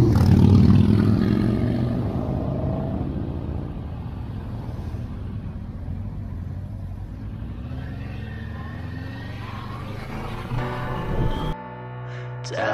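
Motorcycle engine, a Kawasaki Versys 650's parallel twin, with wind noise. It fades as the bike slows for an intersection, runs low and steady, then rises in pitch as it pulls away. Music cuts in just before the end.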